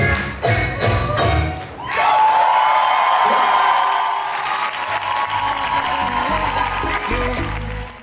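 A bachata song's beat stops about two seconds in, followed by an audience applauding and cheering, with music coming back underneath in the second half.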